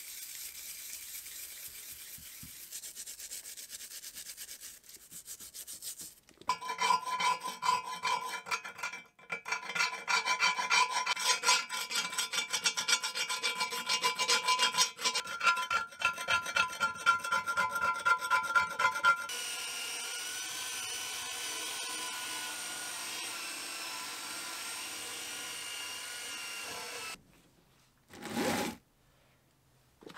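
A stiff brush scrubbing cast lathe parts in a tray of cleaning liquid, then a hand tool scraping old paint and grime off cast iron. The scraping goes in rough, rapid strokes that make the metal ring, then settles into a steadier scrape for several seconds before stopping. A single short knock comes near the end.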